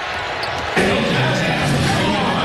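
Basketball game audio from the court: the ball bouncing amid the noise of play. A commentator's voice comes in, louder, about three-quarters of a second in.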